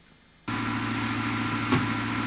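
Near silence, then about half a second in a steady low mechanical drone starts abruptly and runs on, with a faint click near the end.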